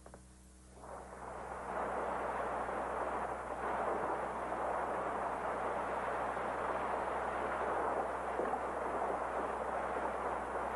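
Boat under way at sea: a steady rushing noise of engine and water, building about a second in and then holding even.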